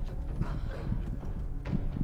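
Ambient sound from a TV drama's soundtrack: a low steady rumble with a few soft knocks, about half a second in and again near the end.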